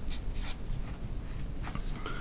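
Felt-tip marker writing on paper, faint scratching strokes with a few short squeaks as a number is written.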